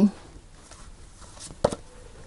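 Tarot cards handled quietly on a cloth-covered table, with one sharp click about one and a half seconds in as the next card is drawn from the deck.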